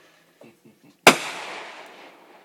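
A single sharp firework bang about a second in, followed by a rolling echo that fades over the next second.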